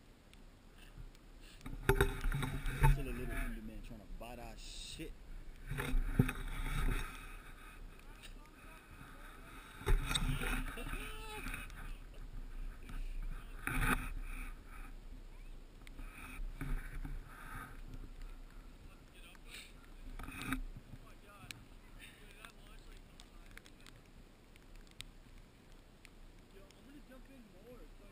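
Indistinct, distant shouting voices in several short bursts, with quieter noise between them.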